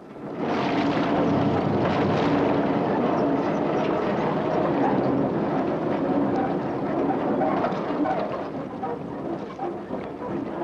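A heavy truck's engine running steadily as the truck drives slowly through deep mud. The sound comes in just after the start and eases off somewhat near the end.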